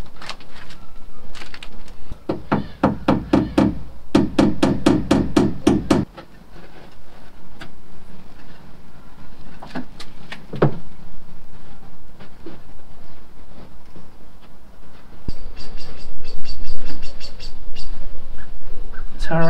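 Hammer tapping rapidly on a plywood boat hull: about two seconds in comes a run of quick blows, about five to six a second, that gets louder before stopping suddenly a few seconds later. A few scattered knocks follow, and near the end there is a quicker run of light, high clicks.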